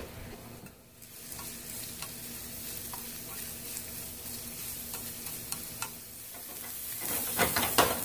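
Julienned carrots sizzling as they stir-fry in a ceramic-coated skillet, turned with wooden chopsticks: a steady frying hiss, with a few sharp clicks near the end.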